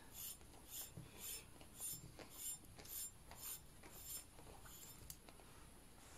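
Synthetic string being pulled through a brass pipe, heard as faint rhythmic rubbing strokes, about two a second, that stop around four seconds in.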